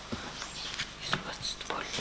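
A short pause in speech picked up by a courtroom microphone: faint whispering over a low hiss, with a few small sharp clicks.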